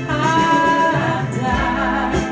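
A song playing from a 45 rpm vinyl record: a singer holding long notes over a bass line.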